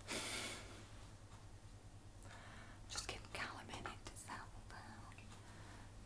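Quiet, with soft whispery sounds: a breathy hiss right at the start, then a few faint brief rustles about three seconds in, over a low steady hum.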